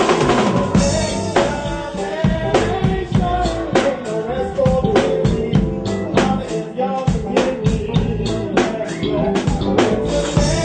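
Live band playing an instrumental passage: a drum kit keeps a steady beat of kick and snare hits over a bass line and other instruments, with no vocal.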